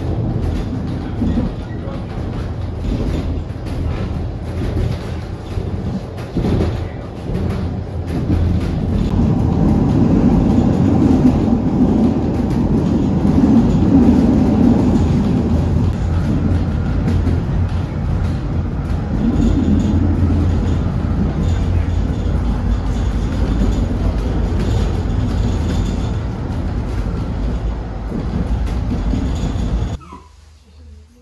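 Narrow-gauge train running, a steady loud rumble of the carriage rolling on the rails heard from aboard.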